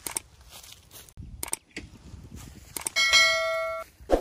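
Subscribe-button animation sound effects: a few short clicks, then a notification-bell ding about three seconds in that rings clearly for nearly a second.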